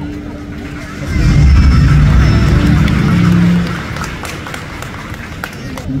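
Live stage band through the PA with a crowd cheering: a loud swell of music, heavy in the bass, starts about a second in, lasts roughly three seconds, then drops back to a crowd murmur.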